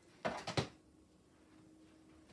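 Plastic DVD case being handled and set down on a wooden TV stand: a quick cluster of clicks and knocks a quarter second in, lasting about half a second.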